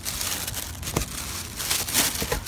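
Crumpled wrapping in a shoebox crinkling and rustling as hands dig through it, a steady run of small crackles with sharper rustles about a second in and near the end.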